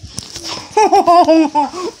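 A child laughing hard in a quick run of high-pitched "ha" bursts, starting under a second in after a brief rustle of the phone being moved.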